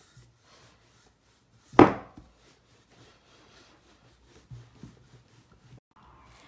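Wooden rolling pin rolling out puff pastry dough on a wooden board, faint rubbing and light taps, with one sharp wooden knock about two seconds in.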